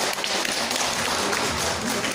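Applause from a small audience: a dense patter of many hand claps.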